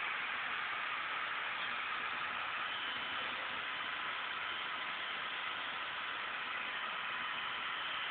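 Steady, even hiss of background noise with no distinct events; the towel rubbing makes no sound that stands out from it.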